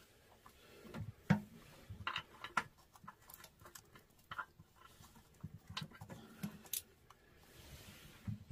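Faint scattered clicks and scrapes of a small brass nut being turned off a toilet's floor bolt by hand, metal on metal.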